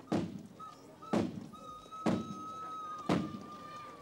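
Slow, evenly spaced thuds about once a second, four in all, each ringing briefly. A steady high note is held over the middle of the run.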